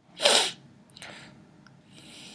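A person sneezes once, sharply and loudly, followed about a second later by a much fainter short breath sound.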